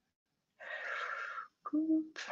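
A person breathing out audibly into a close microphone, a breathy exhale of about a second, followed near the end by a brief voiced hum.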